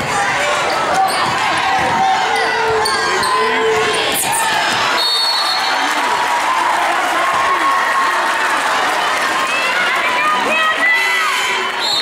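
Basketball game noise in a gymnasium: a crowd of spectators talking and calling out, a basketball bouncing and sneakers squeaking on the hardwood court. A short referee's whistle sounds about five seconds in.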